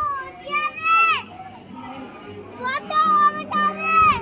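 Children's voices shouting and calling out in high pitches, one call about a second in falling sharply, more calls near the end.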